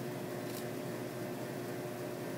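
Steady room noise: an even hiss with a constant low hum, like air-handling equipment. A faint tick comes about half a second in.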